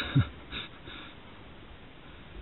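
The tail end of a person's laughter: a short low laugh and a couple of soft breaths in the first second, then only a faint steady background hiss.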